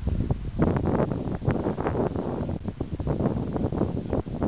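Wind buffeting the microphone in irregular gusts, loud and rumbling.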